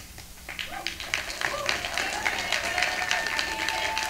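Audience applauding, starting about half a second in and going on steadily.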